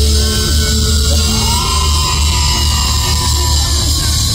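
A live band playing loudly close at hand: drum kit, congas and guitars over heavy bass, heard from beside the stage.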